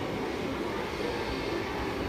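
Steady background noise, an even low rumble and hiss with no distinct events.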